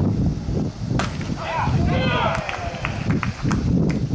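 A single sharp crack as the pitched baseball arrives at home plate, followed by shouting voices.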